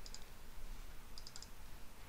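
Faint clicks of a computer mouse: a pair right at the start and a quick run of about four a little over a second in, over low steady hiss.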